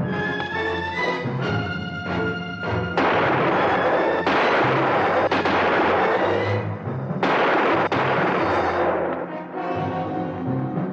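Dramatic orchestral western score with brass and timpani, broken in the middle by loud gunshots: sharp reports about three, four and seven seconds in, each followed by a long noisy echo. The music carries on near the end.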